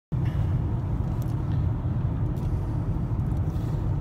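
Steady low rumble inside a car's cabin while it is being driven: engine and road noise, with a few faint ticks.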